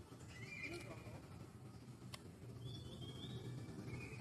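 Faint, short high-pitched squeaky calls from macaques, three of them a second or so apart, with a single sharp click about two seconds in.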